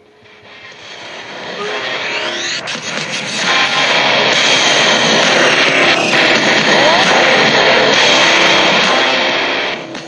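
Loud vehicle engine noise mixed with music in an ad-break bumper. It swells up over the first few seconds, holds steady, then cuts off suddenly at the end.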